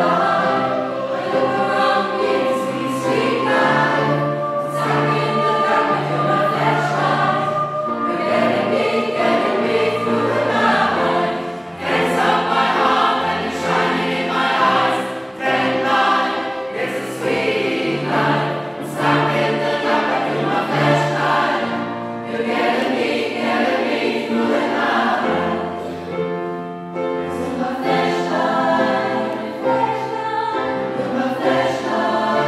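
A mixed choir of women and men singing a pop song in several parts, with held low bass notes under the upper voices.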